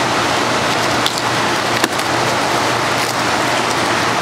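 Plastic cling wrap crinkling and rustling close up as it is peeled off a plastic food container: a dense, continuous crackle with a few sharper clicks.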